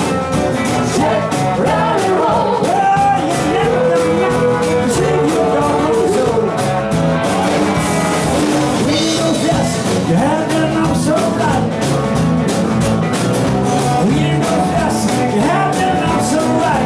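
Live rock and roll band playing: electric guitars, saxophone and drums over a steady beat, with a melody line on top that holds one long note a few seconds in.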